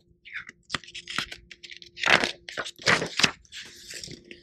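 Paper pages of a picture book being handled and turned: a string of crinkling, rustling paper sounds, loudest about two and three seconds in.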